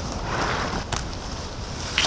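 Strong wind buffeting the microphone in a heavy, steady rumble, with dry cattail stalks rustling as hands push through them.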